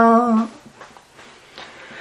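A voice chanting Vietnamese devotional verse holds the last note of a line steady, then stops about half a second in, leaving a faint hiss for the rest of the pause between lines.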